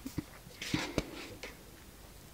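A sheet of scrapbook paper in a paper pad being turned over by hand: a brief paper rustle about halfway through, with a few light taps and ticks.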